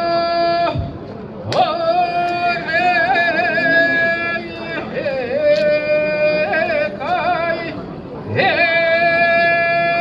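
A solo voice singing kiyari, a traditional Japanese work chant, in long, drawn-out high notes with wavering ornaments. The notes are broken by short pauses for breath about a second in and again near the end.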